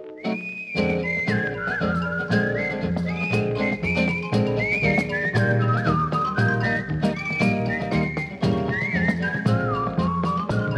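Instrumental break in a late-1950s Latin pop song: a whistled melody sliding between notes, opening on a long held high note, over a band with bass and light percussion.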